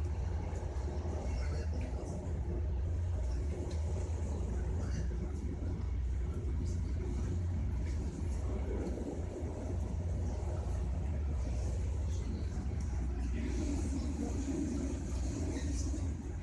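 Steady low rumble of a moving passenger train, heard from inside the carriage.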